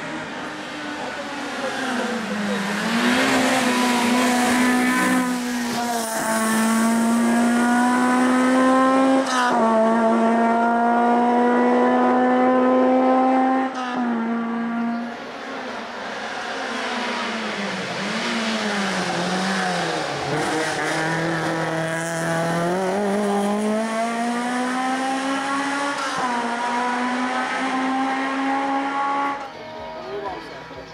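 Škoda Felicia hill-climb race car engine at full throttle, its pitch climbing through each gear with sharp drops at the upshifts about 6, 9 and 14 seconds in. Midway the revs fall and rise several times as it slows and accelerates through the bends, then it pulls hard again toward the end.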